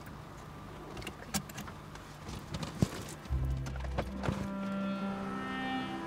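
Background drama score: low held notes come in about three seconds in and are joined by higher sustained notes. Before the music there are a few faint clicks and knocks, the sharpest a single click just before it starts.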